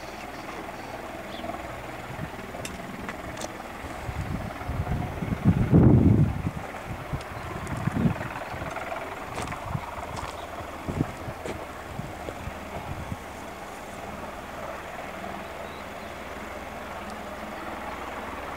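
Bell Boeing MV-22B Osprey tiltrotor running on the ground with its proprotors turning, heard from a distance as a steady drone. A louder low rumble swells about five to six seconds in.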